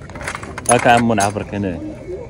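A jangle of loose metal, with a man's voice calling out loudly for about a second over it.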